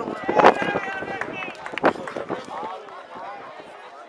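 Men shouting on a football pitch, loud in the first couple of seconds and then fainter, with one sharp knock about two seconds in.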